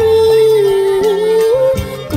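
A Khmer song: a singer holds one long note, bending it slightly near the end, over an instrumental accompaniment with a stepping bass line.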